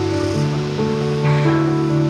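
Background music: soft sustained chords whose notes change slowly.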